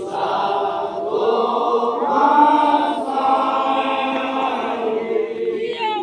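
Many voices chanting together in long held notes over a steady drone, the melody shifting in phrases every second or two: a Toraja funeral chant sung by the crowd standing in a circle, in the manner of the ma'badong.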